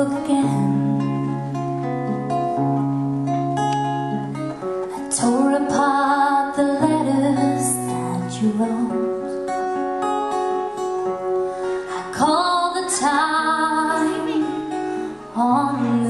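A woman singing with her own acoustic guitar accompaniment, live. The guitar holds chords throughout, and her voice comes in phrases, most strongly in the middle and near the end.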